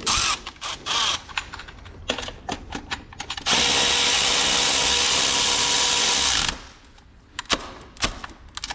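Cordless electric ratchet running steadily for about three seconds in the middle, driving a starter-motor mounting bolt on a transmission, then stopping suddenly. Before it come scattered clicks and knocks as the tool and socket are handled and fitted onto the bolt.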